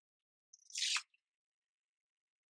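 A sheet of paper planner stickers rustling once, a brief half-second brush of paper about halfway through.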